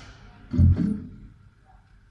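Two-manual organ playing softly as a preacher's backing, with one short loud accent about half a second in before it settles to a quiet sustained tone.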